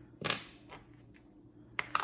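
Hands handling wrapped candies and a plastic Easter egg on a tabletop: a short rustle about a quarter second in, a few faint ticks, then two sharp clicks near the end.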